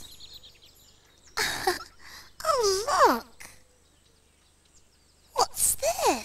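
High, wordless squeaks and breathy puffs from a small puppet character's voice, sliding up and down in pitch, as it pulls a tissue from a box; a faint falling tinkle of chimes sounds at the start.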